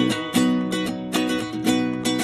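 Viola caipira and acoustic guitar strumming chords together in a steady rhythm, an instrumental gap between sung lines of a sertanejo universitário song.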